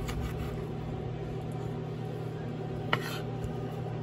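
A chef's knife cutting through smoked sausage and knocking against a bamboo cutting board, once at the start and more sharply about three seconds in, over a steady low hum.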